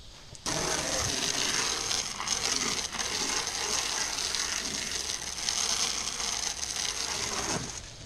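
Water spraying from a garden hose onto a fiberglass boat hull: a steady hiss that starts about half a second in and stops just before the end.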